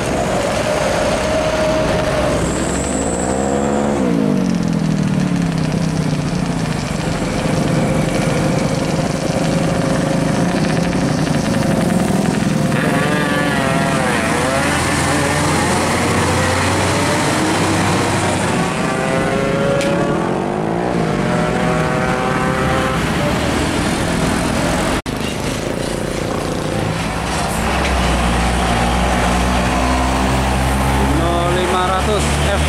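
Heavy diesel trucks driving past one after another, their engines' pitch rising and falling as each one goes by.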